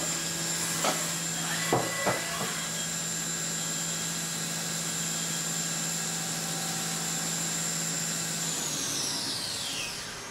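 Haas CNC mill spindle running a ball end mill to deburr the edges of a billet aluminium part, with a steady high whine over a low hum and a few sharp ticks in the first couple of seconds. Near the end the whine falls steadily in pitch as the spindle spins down.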